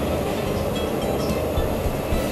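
A steady, even rumbling background noise, with a few faint squeaks of a marker pen drawing on a whiteboard about a second in.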